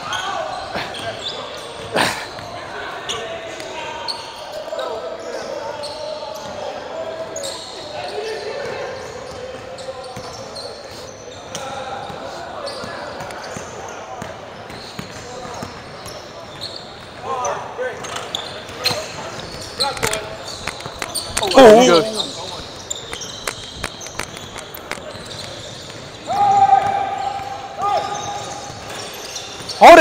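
Basketball dribbling and bouncing on a hardwood court in a large echoing gym, with players' voices in the background. A loud, brief wordless shout comes about two-thirds of the way through.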